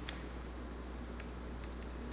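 Typing on a MacBook Pro laptop keyboard: a handful of scattered key clicks over a steady low hum.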